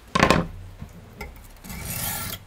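Hand work at a wooden workbench: a short sharp scraping stroke just after the start, then a longer rub near the end, like an object being scraped and rubbed against the bench and vice.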